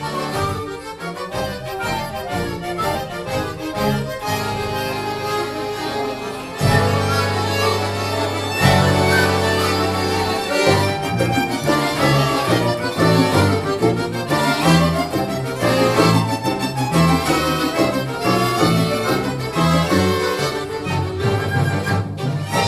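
Accordion orchestra with violins and cello playing a piece together. About six and a half seconds in, the music gets louder on long held low notes, then a steady rhythmic bass line carries on from about eleven seconds.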